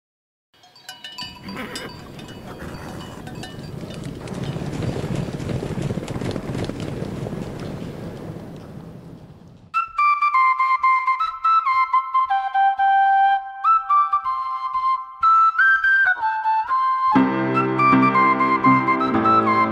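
A swelling wash of ambient noise with a few animal bleats, then a solo flute that starts about halfway in and plays a slow stepped melody. The fuller backing of the song joins near the end.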